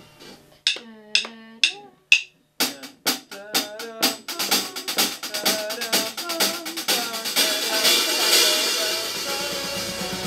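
Rock music with drums: a few separate struck notes, then quick repeated hits that build into a full, dense passage that grows louder.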